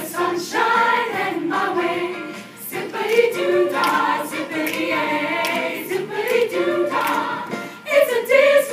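Choir singing a choral Disney medley arrangement, in phrases, with a short break about two and a half seconds in.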